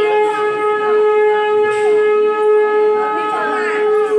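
A conch shell (shankh) blown in one long, steady, unwavering note, with faint voices behind it.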